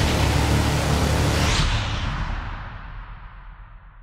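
Closing music sting: a sudden noisy hit with a deep low rumble that fades away over about three seconds, with a brief rising whoosh partway through.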